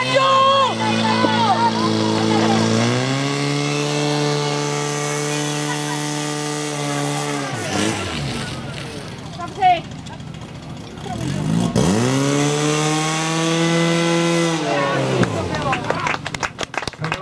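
Portable fire pump engine held at high revs, a steady high-pitched note, while it feeds water to the two attack lines spraying at the targets. It drops off about halfway through, then revs back up about twelve seconds in and falls away again near the end.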